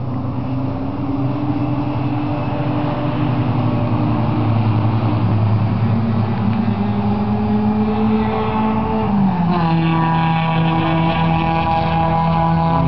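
Small single-engine propeller aircraft moving along the runway, its engine growing louder and then dropping in pitch about nine seconds in as it passes.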